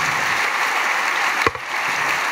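Audience applauding steadily, with a single sharp knock about one and a half seconds in.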